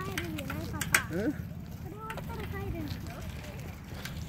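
Faint talking, with a few soft clicks, over a steady low rumble of wind on a phone microphone outdoors.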